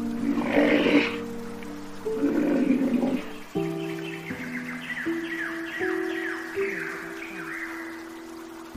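Background music of sustained, steady notes, overlaid with animal calls: two rough, noisy calls in the first three seconds, then a quick run of short, falling chirps about three a second.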